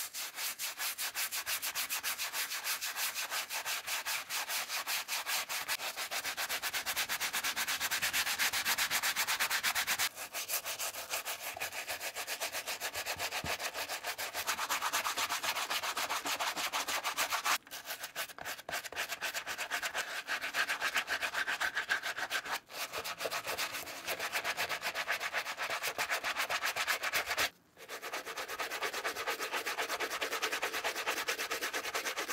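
Bristle brush scrubbing a sneaker's insole and its lathered upper in rapid, continuous back-and-forth strokes, with a few brief pauses.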